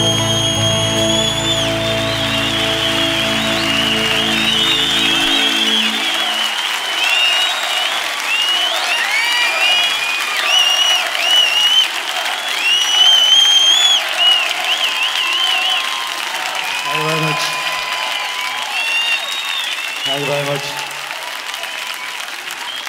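A live audience applauding, cheering and whistling at the end of the ballad, with many shrill, sliding whistles through the middle. The band's last chord rings out under the applause and stops about five to six seconds in, and a man's voice is briefly heard near the end.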